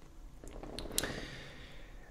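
Quiet room noise with a soft hiss and a couple of faint small clicks about a second in.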